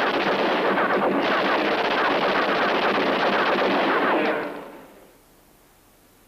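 Dense, rapid gunfire from a film shootout, many shots running together into a continuous volley. It dies away about four and a half seconds in, leaving only low hiss.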